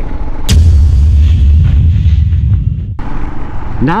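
Wind buffeting the microphone while riding: a low rumble that starts suddenly about half a second in and dies down about two seconds later. A brief dropout follows near the three-second mark.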